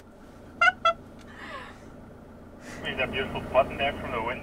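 Voices: two short spoken calls near the start, then talking from about two-thirds of the way in, part of it over walkie-talkies, with a low steady hum underneath.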